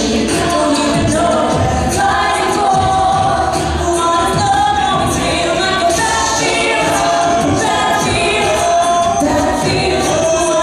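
Co-ed a cappella group singing a pop song without instruments: a female lead voice over a choir of backing voices, with a steady low beat underneath.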